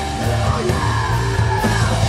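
Heavy rock band playing live and loud: a sustained low distorted guitar and bass riff over a drum kit, with a yelled vocal wavering over it and a cymbal crash near the end.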